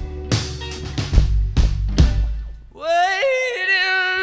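Live rock band of electric guitars, bass and drum kit playing, with drum hits over a steady bass. The band drops out briefly near the end, then a long sung note slides up in pitch and is held.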